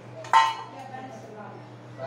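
A single metal clink against an aluminium cooking pot about a third of a second in, ringing briefly, over a steady low hum.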